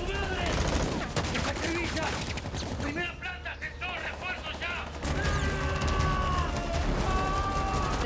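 Rapid automatic gunfire with shouting voices in a film soundtrack during the first few seconds. In the second half, sustained music notes sink slowly in pitch.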